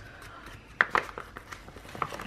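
A paper sticker sheet being handled while a sticker is peeled off its backing: soft paper rustling with two small ticks a little under a second in.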